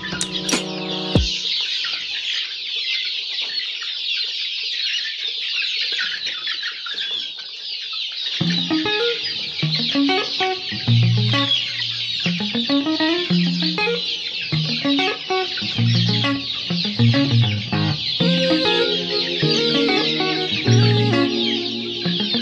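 A large flock of chickens clucking and peeping all at once in a continuous high-pitched din. Background guitar music cuts off about a second in and comes back in about eight seconds in.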